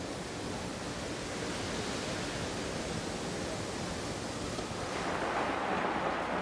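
Steady hiss of an industrial spray hose, even and unbroken, growing a little louder near the end.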